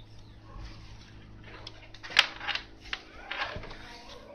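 A sharp click about two seconds in, followed by a few shorter rustling noises, over a steady low hum.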